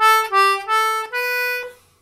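D/G melodeon (two-row button accordion) playing four single treble-reed notes, A, G, A, then B, with the bellows changing direction pull, push, pull, push. The last note is held longer than the three quick ones before it.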